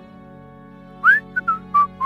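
A man whistling a short, idle tune that starts about a second in: a first note sliding upward, then a few short notes stepping down in pitch. Soft, sustained background music plays underneath.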